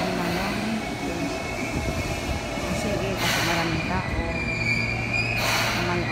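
Commuter train at a station platform: a steady rumble with a wavering whine and squeal from the train, a low hum in the second half, and two short hisses about three and five and a half seconds in.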